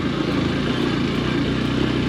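Motorcycle engine running steadily at a constant speed as the bike is ridden.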